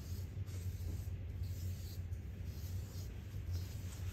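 A charcoal pencil scratching across drawing paper in quick, repeated circular strokes, over a steady low hum.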